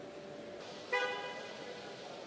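A single short horn toot about a second in, over the steady hum of the factory floor.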